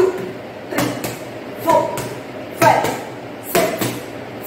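Punches landing on a padded boxing glove held up as a target, five sharp smacks about one a second, the first the loudest, each followed by a brief vocal sound.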